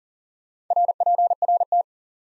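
Morse code sent at 40 words per minute as a keyed tone of about 700 Hz, a quick string of dots and dashes lasting about a second, starting a little way in. It spells the abbreviation for "report" (RPRT), which is then spoken.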